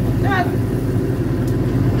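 Boat engine running steadily with a low drone, under one short shout.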